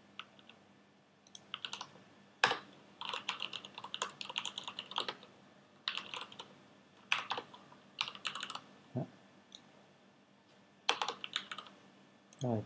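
Typing on a computer keyboard: irregular bursts of quick keystrokes with short pauses between them, a longer pause of about a second and a half near the end, then a final burst.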